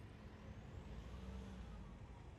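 Faint low rumble of a passing motor vehicle, swelling slightly toward the middle.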